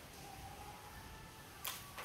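Quiet room tone with one sharp click near the end: a small plastic toy piece being handled or set down.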